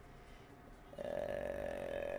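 A person's voice holding a steady, flat hum or drawn-out vowel for about a second and a half. It starts about a second in, after a moment of near silence.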